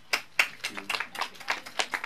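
A few people clapping briefly: a quick, irregular patter of handclaps, several a second.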